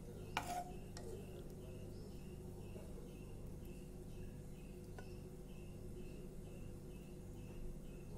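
Faint steel spoon on a plate while curry is served: a light clink near the start and another about midway. Under it, a low steady hum and a faint high chirp repeating about three times a second.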